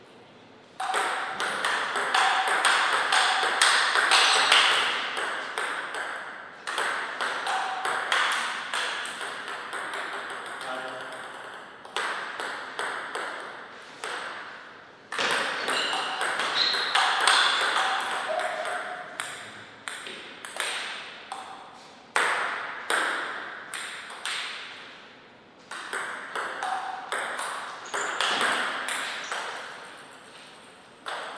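Table tennis ball clicking back and forth off paddles and table in rallies: quick runs of sharp ticks, each run lasting a few seconds, broken by short pauses between points.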